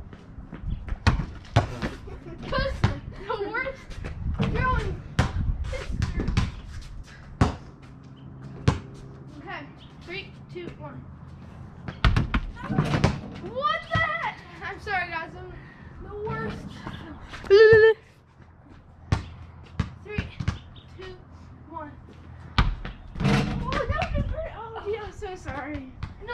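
A basketball bouncing and striking over and over, irregularly, with boys' voices talking and calling out; a brief loud cry is the loudest moment, a little before 18 seconds in.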